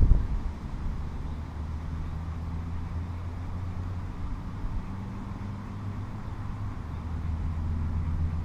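A steady low outdoor rumble, like wind on the microphone or distant traffic, with a brief thump right at the start.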